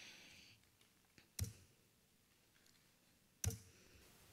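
Two sharp clicks about two seconds apart, with a fainter tick just before the first, over quiet room tone. They are clicks at the lectern computer as a recording is set up to play.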